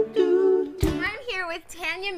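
A held vocal note at the tail of a music sting, then, from just under a second in, a woman's voice talking.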